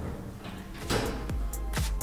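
Elevator landing doors sliding shut, then electronic dance music with a steady kick-drum beat starting about a second in.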